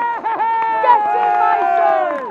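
Football supporters close by cheering and singing after a goal, several voices holding long notes together.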